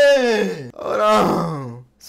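A man's excited, wordless vocal exclamations: two long drawn-out cries, each sliding down in pitch, the second trailing off into a low groan just before the end.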